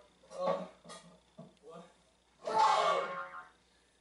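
Speech from a played-back video: a young man's voice saying 'What? What?', the second one shouted loudly about two and a half seconds in.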